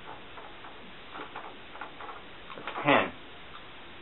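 Low room noise with one short voiced sound, a brief vocal grunt or call, about three seconds in.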